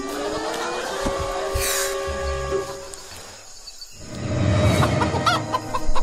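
A rooster crows, one long call that rises and then holds, followed by a low rumble with hens clucking near the end.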